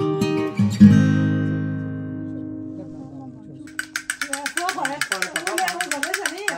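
Acoustic guitar background music, ending on a loud strum just under a second in that rings out and fades over about three seconds. Near the end, a different sound starts: rapid, evenly spaced clicking with a warbling, voice-like tune over it.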